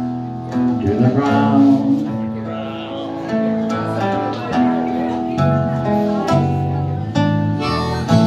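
Live country band playing an instrumental passage at a slow tempo: nylon-string acoustic guitar, electric guitar, bass and drums, with harmonica carrying held notes over the top.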